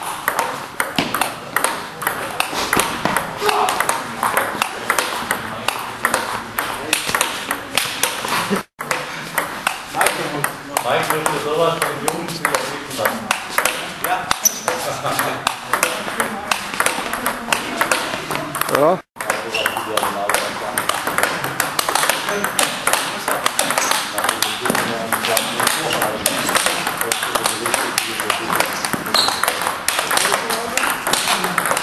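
Quick, continuous table tennis rally against a rebound board: the celluloid ball clicks rapidly off the rubber bat, the table and the Topspin returnboard in quick succession. The clicking breaks off twice, briefly.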